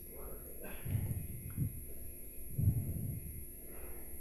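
Faint breaths and soft, muffled mouth sounds from a presenter pausing between sentences, over a steady low electrical hum.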